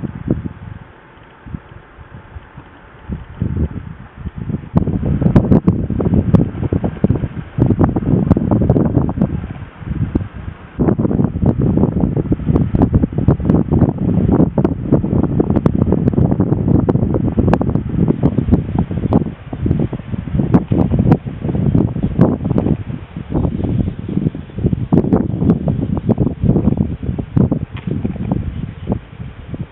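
Wind buffeting the microphone: a rough, gusty rumble that starts about four seconds in and goes on in uneven gusts, with a short lull about ten seconds in.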